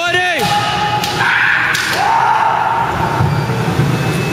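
Kendo players' kiai shouts echoing in a gym: a short shout that rises and falls at the start, then a long held shout about two seconds in. A sharp knock comes between them, about one and a half seconds in.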